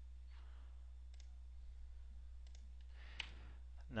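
A few faint computer mouse clicks, spaced about a second apart, over a steady low electrical hum.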